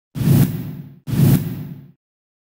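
Two identical whoosh sound effects about a second apart, each starting sharply with a deep rumble and hiss and fading away: the news channel's logo sting.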